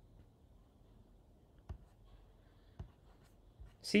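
Quiet room tone with two faint, short clicks from a computer mouse, the first a little under two seconds in and the second near three seconds in.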